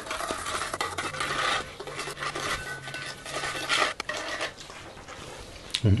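Metal spoon stirring a liquid marinade in a stainless steel bowl, scraping and clinking against the bowl's sides, easing off near the end.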